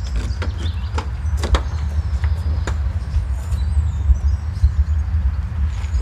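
A small hatchback's driver door being opened, with a few sharp clicks and knocks from the handle and door, over a steady low rumble; faint bird chirps.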